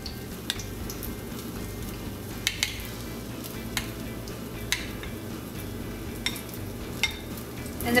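A metal spoon working batter over banana slices in a ceramic bowl, clinking lightly against the bowl about seven times at uneven intervals, over a steady hiss.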